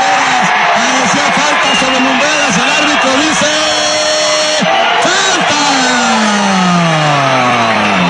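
A male Spanish-language radio football commentator talking rapidly and excitedly over steady stadium crowd noise, ending in one long, drawn-out call that falls in pitch.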